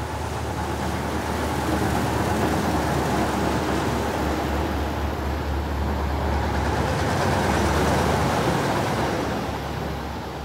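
Heavy diesel dump trucks driving past one after another on a wet road: a steady engine rumble with tyre noise, swelling to its loudest about eight seconds in and dropping away near the end.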